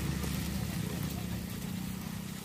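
Luchi deep-frying in hot oil in a steel kadai, a fine steady sizzle, under a louder low steady hum like an engine running nearby.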